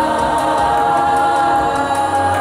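A large youth choir singing, the voices holding long sustained chords.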